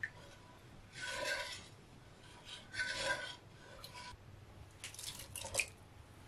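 A wooden spoon stirring sesame soy-milk broth in a pot, scraping along the pot's bottom in two strokes about two seconds apart, the pot ringing faintly with each. A few short light clicks near the end.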